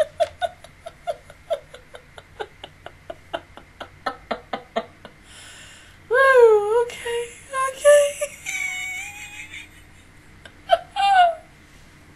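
A woman laughing hard: a quick run of short, breathy laughs, then a loud, high, wavering squeal of laughter about six seconds in, and one more short laugh near the end.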